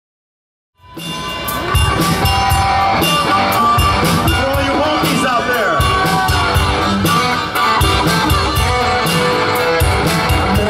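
Live rock band playing electric guitar, bass guitar and drums, with a steady cymbal beat. The music cuts in about a second in, after silence.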